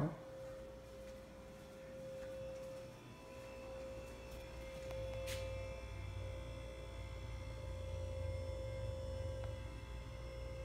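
A steady electrical hum on one held tone, with a low rumble coming in about halfway and a single sharp click just after it.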